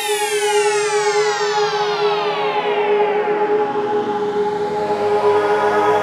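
Synthesized logo-sting sound effect: a dense cluster of tones sliding steadily downward in pitch over about five seconds, like a falling siren, over a steady held drone, settling into a sustained chord near the end.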